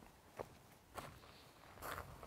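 Near silence broken by three faint, short rustles: one about half a second in, one at a second, and a slightly longer one near the end.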